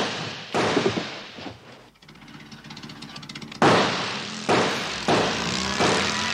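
A series of about six sudden loud hits, each dying away within a second, with a quieter gap in the middle.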